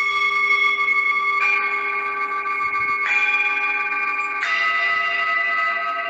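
Singing bowls struck in turn, a new stroke about every one and a half seconds at a different pitch, each ringing on steadily and overlapping with the last.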